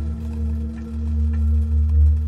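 Dark ambient background music: a low, sustained drone with several steady held tones and no beat.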